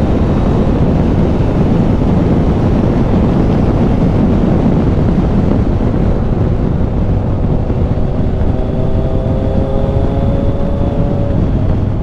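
Wind rushing over a helmet-mounted microphone on a moving 2013 Triumph Tiger 800, with the bike's three-cylinder engine running underneath. In the second half the engine note climbs slowly as the bike pulls along the road.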